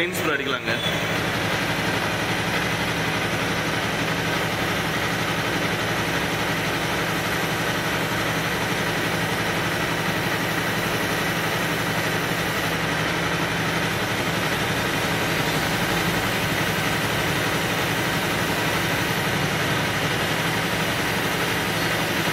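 Aerosol spray can hissing in one long continuous spray onto a motorcycle's front sprocket and drive chain, cleaning off grime, over a steady low hum.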